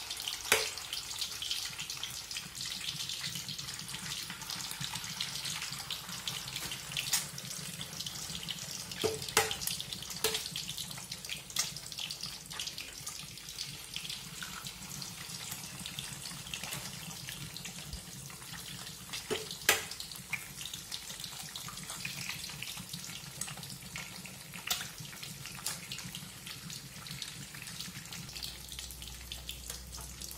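Eggs and scallions frying in hot oil in a wok: a steady sizzle with crackling pops and a few sharp clicks, the loudest near the start and about two-thirds of the way through.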